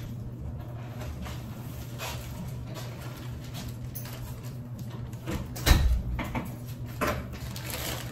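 Handling noise as a person moves about with a plastic mailer bag: soft rustles and a few light knocks over a low, steady room hum, with one louder thump a little under six seconds in.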